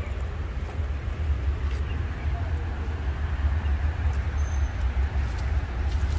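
Steady low rumble with an even hiss of outdoor background noise, and no distinct event standing out.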